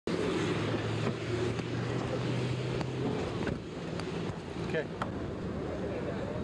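Street traffic noise from running vehicles, with a steady low engine hum through the first half and a few sharp clicks.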